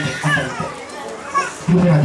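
Children's voices chattering and calling in the background, higher-pitched and quieter than the man's amplified voice, which comes back in loudly near the end.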